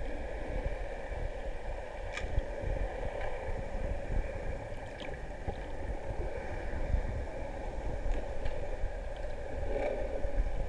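Muffled underwater sound picked up by a camera just below the surface: a fluctuating low rumble of moving water with a steady hum, and a few faint clicks.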